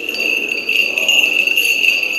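Small liturgical bells jingling continuously, a steady shimmering ring with no pause.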